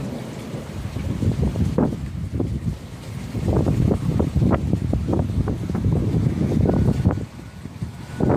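Thunder from an approaching thunderstorm rumbling irregularly, swelling about three seconds in and easing off shortly before the end.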